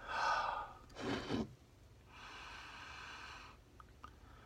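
Two short, sharp breaths through the nose or mouth, then one long, steady sniff lasting over a second as a man smells a glass of beer.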